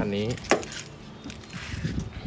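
A sharp click about half a second in, followed by a few light metallic clinks: the front door of a 2020 Mitsubishi Triton pickup being unlatched and swung open.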